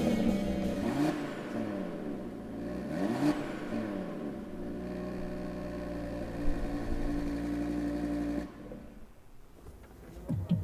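Audi TT RS's turbocharged five-cylinder engine, stationary in Park, revved in a few quick blips that rise and fall in pitch, then idling steadily; it shuts off about eight and a half seconds in.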